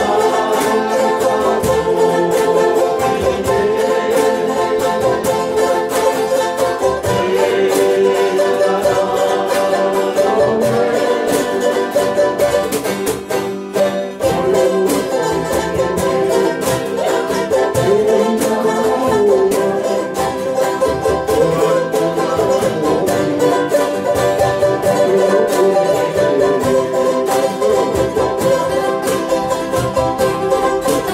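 Small acoustic string band playing a song together: ukulele, banjo and acoustic guitars strummed in a steady rhythm, with a brief drop in level about halfway through.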